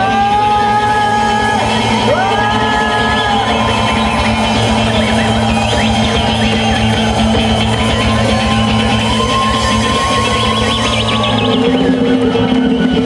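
A live folk-rock band playing: acoustic guitar and bass over a steady low pulse, with a high melody line that slides up into long held notes.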